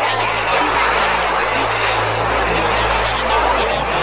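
A dense, distorted jumble of several soundtracks playing at once, voices and music blurred into a loud noisy wash over a steady low hum.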